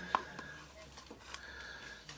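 Handling noise from a hand coffee grinder's glass catch jar being twisted on, with one sharp click just after the start and a few faint taps.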